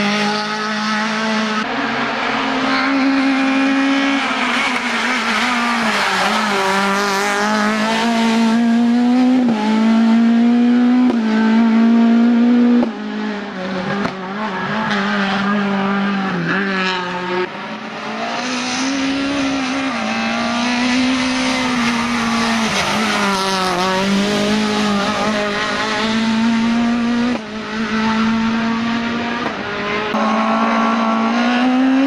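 Peugeot 106 Maxi rally car's four-cylinder engine revving hard under full throttle, its pitch climbing and then dropping again and again through gear changes and lifts for the bends.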